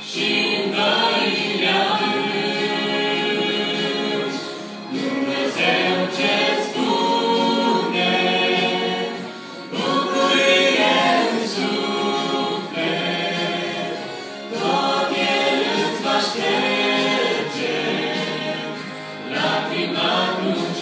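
A small mixed group of men's and women's voices singing a gospel song together in harmony through microphones, in phrases about five seconds long with short breaks for breath between them.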